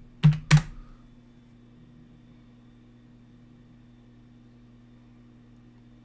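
Two sharp keystrokes on a computer keyboard about half a second in, entering the command to run a program, followed by a faint steady electrical hum.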